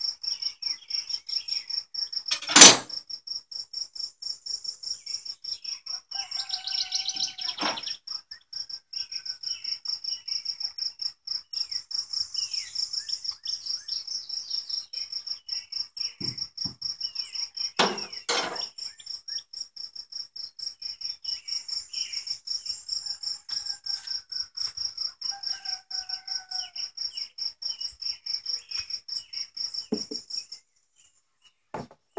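A cricket chirping steadily, a high pulsed trill repeating evenly, with faint bird calls behind it. A sharp knock about two and a half seconds in is the loudest sound, and two more knocks come close together a little past the middle.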